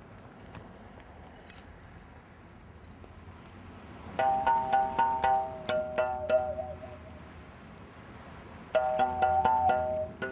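A benta, the Curaçao mouth bow, being played: its string is struck in quick strokes while the player's mouth shapes the ringing overtones into a tune. The playing starts about four seconds in after a soft pause with a couple of faint clicks, breaks off briefly around seven seconds, and resumes near the end.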